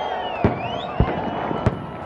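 Fireworks going off: three sharp bangs roughly half a second apart, with a rising whistle between the first two.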